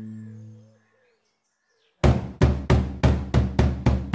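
Song intro: a plucked-string chord dies away, then after a short silence a quick run of about seven drum hits begins halfway through.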